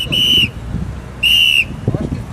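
A whistle blown in short, loud, shrill blasts: a quick double blast, then another blast about a second later.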